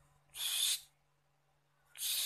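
A caged sogon bird giving a short, harsh, hissy call about half a second long, a third of a second in. A second call begins right at the end, over a faint steady low hum.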